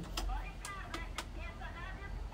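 A caller's faint, thin voice over a telephone line, with a few sharp clicks in the first second and a half.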